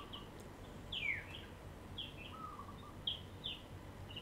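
Birds calling in the background: scattered short high chirps, one falling whistle about a second in, and a lower run of short notes about two and a half seconds in.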